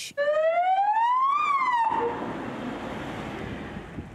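Ambulance siren wailing: one long rising sweep that turns and starts to fall, cut off abruptly a little under two seconds in. After it, steady street and traffic noise.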